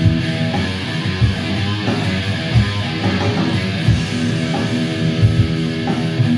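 Electric guitar playing, with chords ringing steadily and low accents about every two-thirds of a second.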